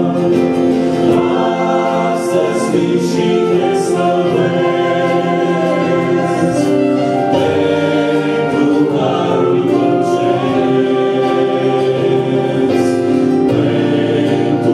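A choir singing a hymn in held chords.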